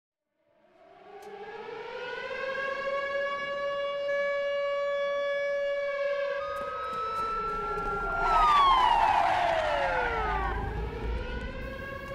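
A siren winding up from nothing and holding a steady wail. A low rumble joins it about halfway through, and about eight seconds in a second tone slides steeply down in pitch.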